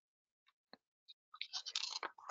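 Near silence, then a few faint clicks and, in the last half second, a quick run of small mouth clicks and breath on a close microphone just before someone starts talking.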